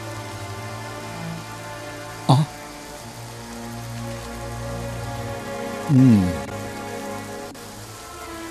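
Soft drama background score with held, sustained notes under a light hiss, interrupted by a brief voice about two seconds in and a short falling vocal sound around six seconds.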